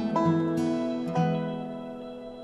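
Acoustic guitar strumming a few chords in an instrumental outro, each struck about half a second apart in the first second or so, then left to ring and fade away.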